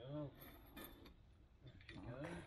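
Two quiet, sharp snips of scissors cutting through netting, with a man's brief wordless voice sound just before them and again near the end.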